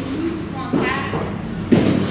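Indistinct voices over a steady low hum, with a short, sharp loud sound near the end.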